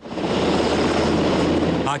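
Military helicopter flying: a steady rotor and engine noise with a fast, even chop. It starts abruptly and cuts off just before the end.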